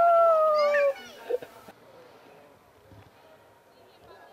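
A child's long, steady 'uuuh' ghost howl meant to scare, dropping slightly in pitch as it ends about a second in. Faint rustling and small knocks follow.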